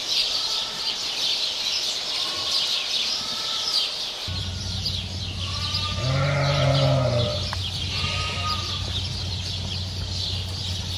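Sheep bleating: a few faint bleats in the first few seconds, then a loud, deep bleat close by, lasting over a second, about six seconds in, and another short bleat after it.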